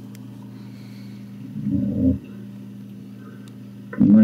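A steady low electrical hum during a pause in the call audio, with one brief low vocal sound from the caller about halfway through.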